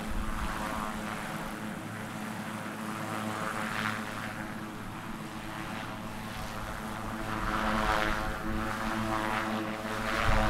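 Marine One, a Sikorsky VH-3D Sea King helicopter, sitting on the ground with its twin turboshaft engines running and its main rotor turning. A steady turbine whine runs under the rotor noise, which swells about four seconds in and again more strongly around eight seconds.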